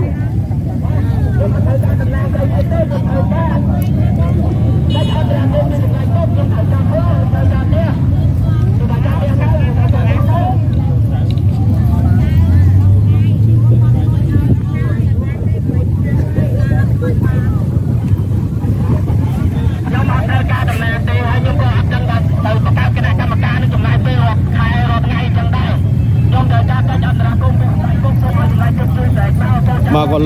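People in a street crowd speaking Khmer, over a steady low rumble.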